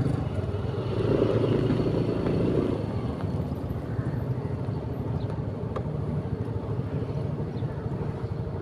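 Small motorcycle engine running at low speed, a steady hum that is strongest for the first three seconds and then falls to a fainter rumble.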